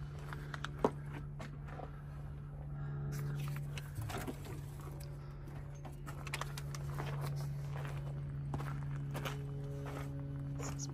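Footsteps crunching on dirt and gravel, with scattered clicks and handling noise and one sharp click about a second in, over a steady low machine hum.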